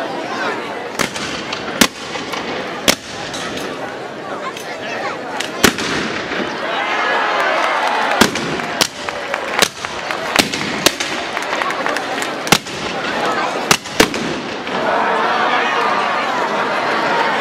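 Shotguns fired at an effigy: about a dozen sharp, irregularly spaced shots, sometimes two close together, over the steady chatter of a large outdoor crowd.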